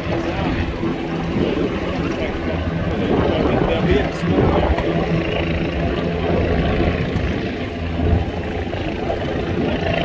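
Steady, even engine hum, with people talking in the background.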